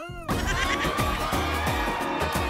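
A short wailing glide, then a comedy music sting: a dense burst of music with a held high note over repeated falling bass swoops.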